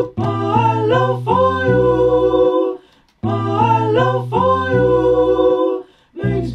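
A looped soul vocal sample: the same sung phrase plays twice over low sustained notes, each pass about three seconds long and cutting off abruptly.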